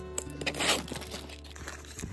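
Cardboard mailer being pulled and torn open by hand, a short tearing, crinkling burst about half a second in with a few small clicks around it, over soft background music.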